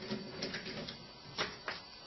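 Light handling noise as a rubber coupling is twisted loose from a sump pump check valve on PVC pipe: faint rubbing with a few sharp clicks and knocks, one about half a second in and two more past the middle.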